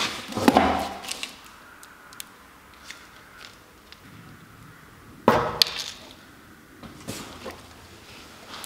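Paint cans and supplies being handled while unpacked from a cardboard box: a knock about half a second in and a pair of knocks just after five seconds, as of a can set down on the workbench, with light clicks and handling noise between.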